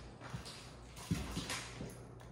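Footsteps on a hardwood floor, about five steps in a row, with the loudest falling just after the midpoint.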